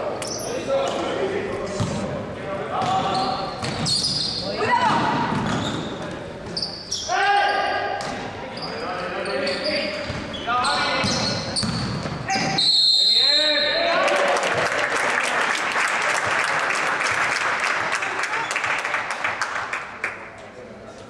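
Basketball game in a sports hall: players and spectators call out while the ball bounces on the court floor. About two-thirds of the way in, a referee's whistle blows briefly. Then comes several seconds of dense crowd noise with clapping.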